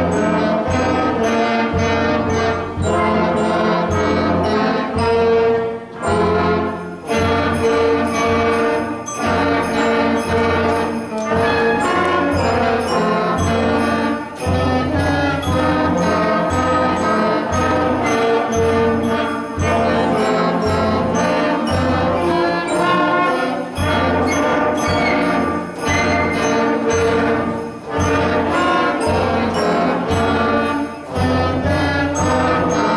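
Young school concert band of brass and woodwinds (trumpets, saxophones, low brass) playing a Christmas tune with a steady beat.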